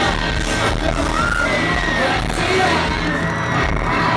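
Live pop concert heard from the audience: a band with drums and electric guitar playing loud, with singing and the crowd cheering over it.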